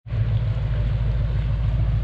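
Wind buffeting the microphone, a steady low rumble, over a soft hiss of running creek water. It starts abruptly after a short break at the very beginning.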